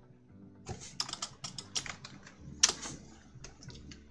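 Typing on a computer keyboard: a quick, uneven run of key clicks starting about two-thirds of a second in, with one louder keystroke near the middle.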